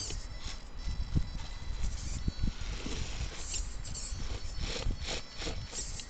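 Axial XR10 RC rock crawler working its way over boulders: irregular knocks and scrapes of its tyres and chassis against the rock, with a faint electric whine from its drivetrain. A low rumble of wind on the microphone lies underneath.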